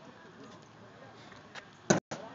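Low outdoor background noise, then near the end a single sharp thud: a corn-filled cornhole bag landing on a wooden cornhole board.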